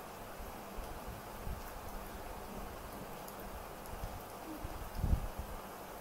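Quiet desk sounds of a Micron fine-liner pen drawing on a paper tile: soft scattered taps over a faint steady hiss. About five seconds in there is a louder low thump as the hand moves the tile.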